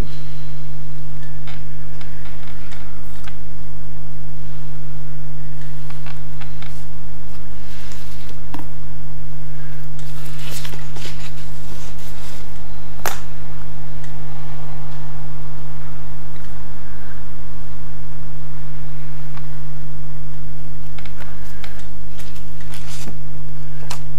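A steady low electrical hum, with faint scratching from a craft knife cutting card along a steel rule and a few light clicks, the sharpest about thirteen seconds in.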